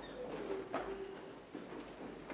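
Quiet church interior after the singing ends: a few scattered knocks and shuffles as the congregation settles, and a brief low tone sliding slightly down in pitch near the start, lasting under a second.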